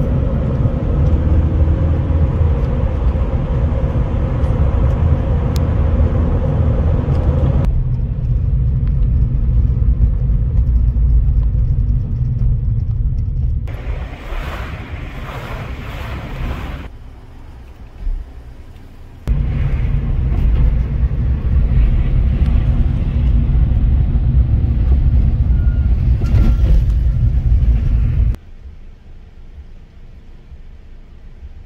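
Steady low engine and road drone heard from inside a moving car, in a string of clips that start and stop abruptly. It drops to a quieter, hissier stretch for a few seconds in the middle and falls away near the end.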